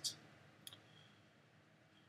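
Near silence: faint room tone, with one small short click about two-thirds of a second in.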